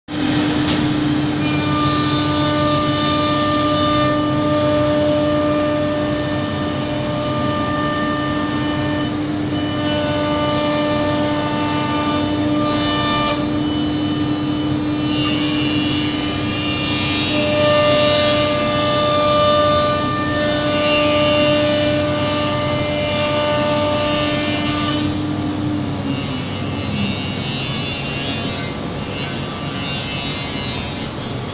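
Philicam FLDM1224 ATC CNC router at work, its spindle whining at one steady pitch over a constant rush of cutting noise. Higher whining tones start and stop in stretches as the machine moves. Near the end the spindle's tone falls and fades as it spins down.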